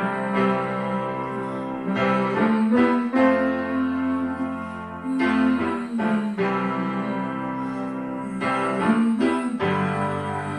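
Piano chords from a keyboard, each held a second or two before changing to the next, in a slow steady accompaniment.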